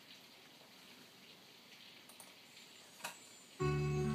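Faint room tone with a few soft clicks, then about three and a half seconds in an instrumental accompaniment track starts suddenly with sustained chords and held higher notes: the intro of the song before the singing.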